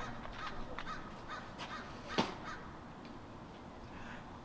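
Crows cawing: a series of short, faint caws, with one louder, sharper caw about two seconds in.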